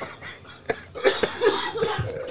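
A man coughing amid laughter, with the loudest bursts starting about a second in.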